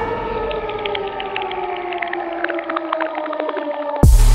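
An electronic synth tone held and gliding slowly downward in pitch, with scattered short high blips sprinkled over it, as part of an edited-in outro sound track.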